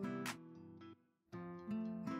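Background music of strummed acoustic guitar chords that ring out and fade, breaking off briefly about a second in before the next strums.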